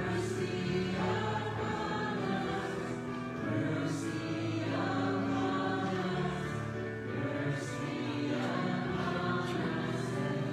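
Church congregation singing a slow liturgical song, with long held notes that change every second or so.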